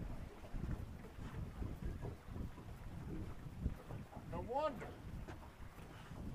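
Wind buffeting the microphone on an open small boat: an uneven low rumble throughout. A short vocal exclamation, rising then falling in pitch, comes about four and a half seconds in.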